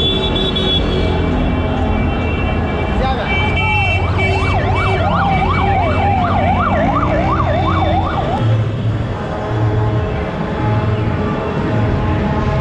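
Vehicle siren yelping, its pitch sweeping rapidly up and down about three times a second for roughly four seconds in the middle, over steady street and traffic noise.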